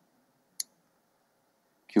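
A single brief, sharp click about half a second in, within an otherwise near-silent pause in speech.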